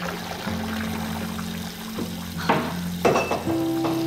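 Water running from a tap into a bath, a steady hiss under soft background music, with a couple of sharp knocks in the second half.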